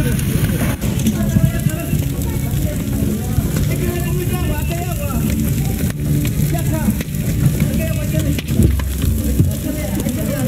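A large building fire burning and crackling, with sharp pops, while people's voices are heard over it.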